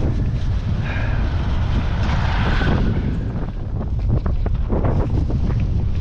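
Wind buffeting the microphone on a moving scooter, a steady low rumble mixed with road noise, with a louder hiss between about one and three seconds in.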